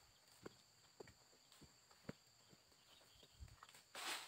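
Near silence: faint outdoor ambience with two faint steady high tones and scattered soft ticks about every half second.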